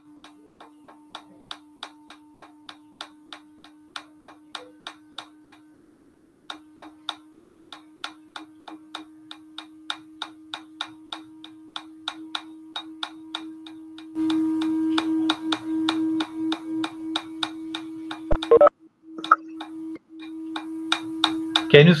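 A sine tone of about 300 Hz from a smartphone waveform-generator app, sounded into the mouth of an empty glass bottle. The on-screen dial is turned as it plays, so the pitch edges slowly upward toward the bottle's resonance near 320 Hz, with a short click about three times a second. About fourteen seconds in the tone grows markedly louder, breaks off briefly a few seconds later, then carries on.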